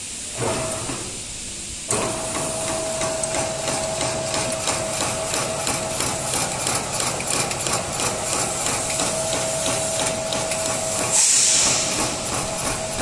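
Commercial vegetable cutting machine starting up about two seconds in, then running steadily: a motor hum under a rapid, even train of chopping strokes from its reciprocating blade over the conveyor belt. A brief loud hiss comes near the end.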